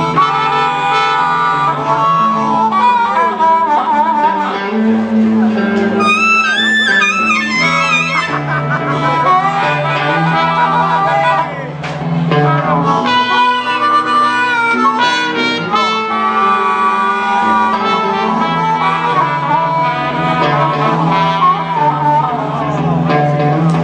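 Blues band playing an instrumental passage, a wind instrument carrying a wavering melody over a steady bass line.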